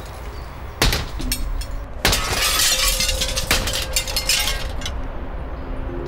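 Smashing and breaking, with glass shattering: one sharp crash just under a second in, then a longer stretch of shattering and clattering from about two seconds in that dies away at around four and a half seconds, over a faint held musical drone.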